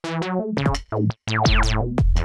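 Synthesizer sequence played through a 24 dB ladder low-pass filter (the Vult Freak manifold filter), an envelope sweeping the cutoff down on each note so every note starts bright and quickly closes. Short notes in quick succession, a brief break just past the middle, then a deeper note.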